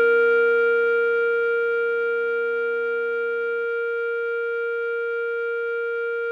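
Clarinet holding one long note, written C5 (a concert B-flat), steady and slowly fading. A lower accompanying chord sounds under it and drops out a little past halfway, leaving the clarinet note alone.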